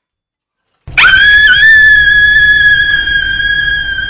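A young woman's long, loud scream on one held high pitch, starting suddenly about a second in and sustained without a break.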